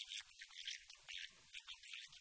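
Faint, irregular high-pitched chirping of birds in the background.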